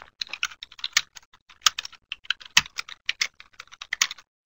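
Typing on a computer keyboard: a fast, uneven run of key clicks with a few louder keystrokes.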